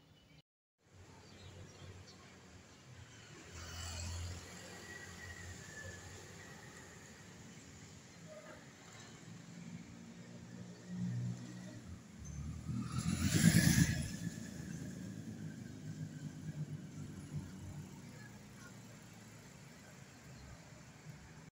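Street traffic: the running engines and tyres of passing cars and motorbikes, with one vehicle passing close and loud about two-thirds of the way through.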